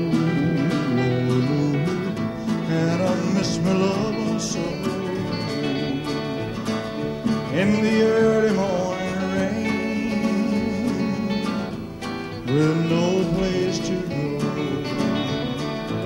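Live band playing a country-style instrumental break between sung verses, with guitar to the fore over the rhythm section.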